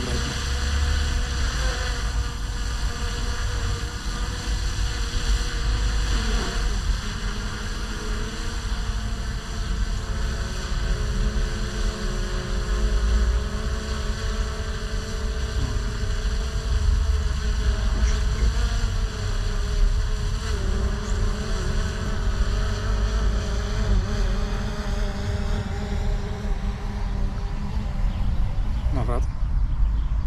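Small quadcopter drone (DJI Mini 3 Pro) hovering and flying, its propellers giving a steady buzzing whine that drifts slightly in pitch, over heavy wind rumble on the microphone.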